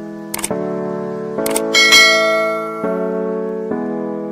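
Background music with sustained notes, overlaid with a short click sound effect about half a second in and a bright bell ding about two seconds in: the click-and-notification-bell sound effects of a subscribe-button animation.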